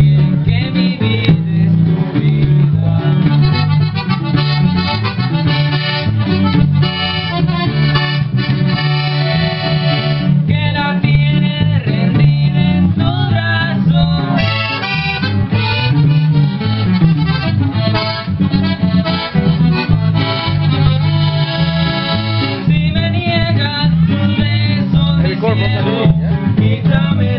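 Live band music: a Gabbanelli piano accordion plays the melody over a twelve-string electric guitar and an electric bass holding a steady bass line.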